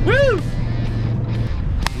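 4WD ute engine running under load in soft sand, heard from inside the cab as a steady low hum, with a man's shout of "Woo!" at the start. The hum stops about one and a half seconds in, followed by a single sharp click.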